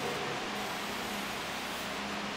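Steady hiss of room tone, with no speech.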